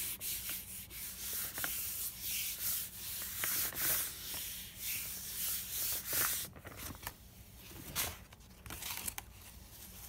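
A palm rubbing a sheet of cardstock pressed onto a gelli plate, dry swishing strokes of hand on paper that press it down to lift the paint for a monoprint. The strokes go quieter over the last few seconds.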